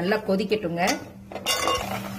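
A metal ladle stirring thick curry in an aluminium pot, scraping and clinking against the pot about one and a half seconds in.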